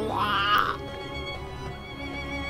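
A man's exaggerated crying wail, rising in pitch and fading out within the first second, over sad background music.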